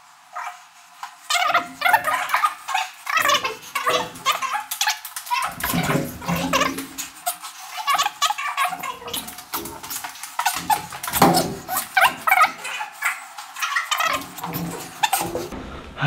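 Sped-up, filtered sound of a large panel being hauled up a stairwell: squeaky, chattering, high-pitched voice fragments mixed with rapid knocks and scrapes, thin with no low end.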